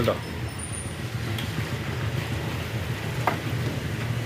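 Steady low background rumble, with a word spoken at the start and a single short click a little over three seconds in.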